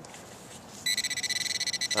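Handheld metal-detecting pinpointer giving a steady, high electronic tone that starts about a second in, signalling metal at the dug hole. The signal comes from the serrated digging knife lying too close.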